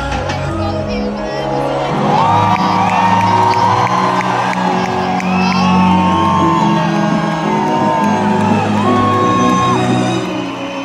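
Loud live concert music filling an arena, heard through a phone's microphone, with a voice holding long, bending sung notes and the crowd whooping and cheering. The deep bass drops away within the first second.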